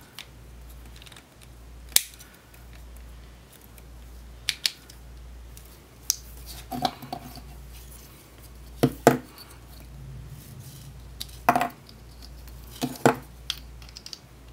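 Plastic parts of a small transforming robot toy clicking and snapping as the figure is folded into vehicle mode: about ten sharp clicks at uneven intervals, a few in quick pairs.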